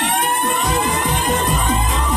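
Reggae riddim playing, with a dub-siren style sweep that rises and then levels off into a held tone, over a pulsing bass line.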